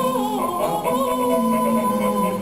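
Barbershop quartet singing a cappella in close four-part harmony, holding sustained chords, with one voice sliding down in pitch at the start.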